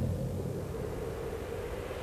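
A low, steady rumble with a faint held hum above it.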